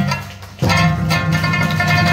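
Live Okinawan sanshin music: a dip in the playing about half a second in, then a held chord rings on.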